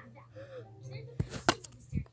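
Three sharp taps or knocks: one about a second in, another half a second later and a third at the end, with quiet stretches between them.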